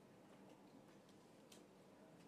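Near silence: faint room tone with a few soft, scattered clicks, the clearest about a second and a half in.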